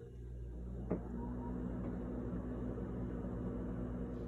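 A steady low hum with a faint hiss, and one short click about a second in.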